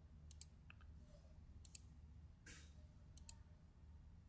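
Near silence with a few faint computer mouse clicks, spaced irregularly.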